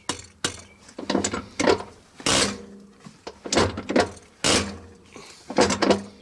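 Bosch KDAL diesel injector with a 7-hole .011 nozzle firing on a hand-lever nozzle pop tester: a string of short, sharp hissing bursts of atomized fuel spray, roughly one or two a second, as the lever is pumped. The nozzle is cracking open at about 3,500 psi and chattering and spraying as it should.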